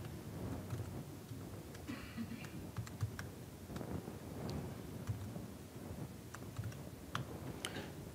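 Faint typing on a computer keyboard: scattered, irregular key clicks as terminal commands are typed.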